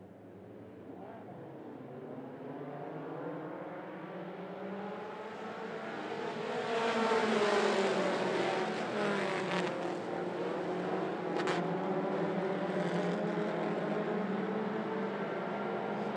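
A field of four-cylinder mini stock race cars accelerating together at the green-flag start. The engines' pitch rises as the noise builds, loudest about seven seconds in as the pack passes, then holds steady as they run on.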